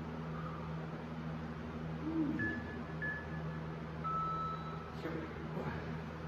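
Two short electronic beeps, then a longer, slightly lower-pitched beep, over a steady low hum.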